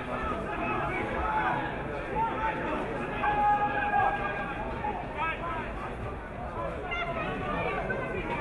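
Indistinct shouts and talk from players on the pitch and spectators at the ground, with one longer drawn-out call near the middle.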